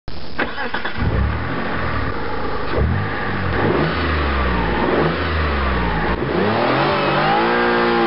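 A motor revving up and down repeatedly, its pitch rising and falling about once a second, with a short click near the start.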